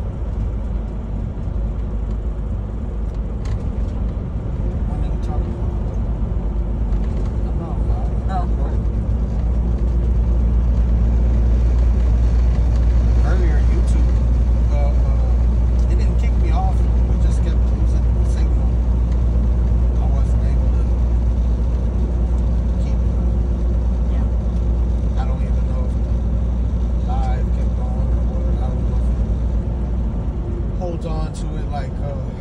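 Steady low drone of a semi-truck's diesel engine and tyres heard inside the cab while cruising on the highway, swelling slightly about a third of the way in.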